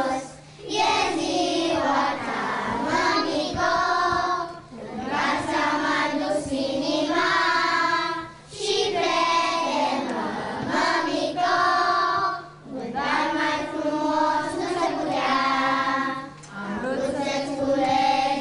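A group of young children singing a song together, in phrases of about four seconds with a short break between each.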